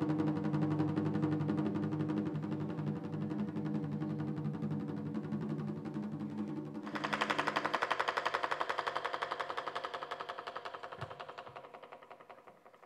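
Stage percussion music: held low tones under a fast, even pulse. About seven seconds in, a brighter, rapid roll of drum strokes starts and gradually fades away.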